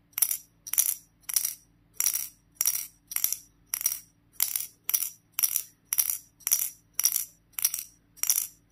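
A steel ball bearing clattering inside a polished steel puzzle cone under a glass lid as the puzzle is jolted in the hand to bounce the ball up. It makes a short metallic rattle with each jolt, about twice a second in a steady rhythm.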